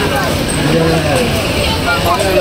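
Busy street sound: people nearby talking over a steady hum of passing traffic.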